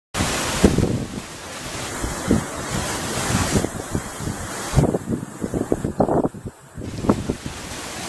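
Wind buffeting the camera microphone outdoors: a steady rushing noise with irregular low rumbles and thumps.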